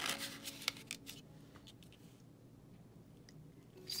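Cardstock envelope and journal card being handled: a flurry of paper rustles and light taps in the first second or so, then a few faint ones.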